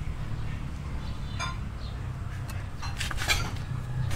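A few light metallic clinks and taps, about a second and a half in and again around three seconds, as a steel brake-pad caliper bracket and tools are handled against a car's brake rotor and hub. A steady low hum runs underneath.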